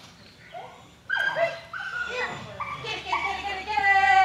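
A dog barking repeatedly, a short bark every fraction of a second from about a second in, ending on a longer, drawn-out one.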